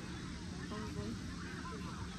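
Open-air background of a busy sports field: steady ambience with faint, distant calls that rise and fall, either far-off shouting or honking geese.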